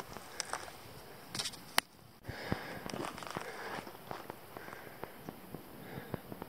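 Faint footsteps and scattered small clicks of a hiker moving over rocky ground, with a brief drop to near silence about two seconds in.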